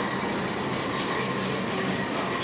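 Steady rumbling background noise with a faint hum, the sound of a store aisle picked up on a handheld phone while moving.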